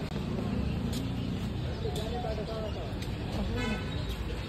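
Street traffic noise with people talking, and a short high-pitched vehicle horn toot near the end.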